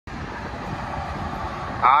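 Steady noise of highway traffic, with trucks passing on the road. A man's voice starts speaking near the end.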